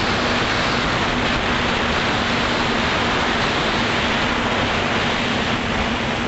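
FPV quadcopter in flight, heard from its onboard camera: a steady rush of wind and propeller noise with a faint steady hum underneath.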